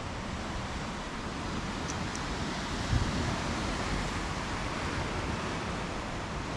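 Steady rush of sea surf from the beach far below, mixed with wind on the microphone, with a brief low thump about three seconds in.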